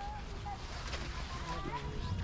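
Wind rumbling on the microphone, with faint voices talking in the background.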